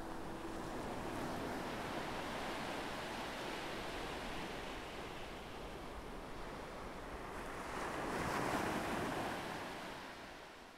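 Sea waves washing onto a sandy beach, a steady rush with one wave swelling louder about eight seconds in, while the last held note of a song dies away at the start.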